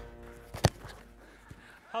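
A football kicked hard, heard as one sharp thud about two-thirds of a second in, followed by two much fainter knocks.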